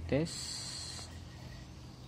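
Multimeter probe tips scraping on solder joints of a circuit board: a short, high, scratchy hiss lasting under a second that stops sharply about a second in.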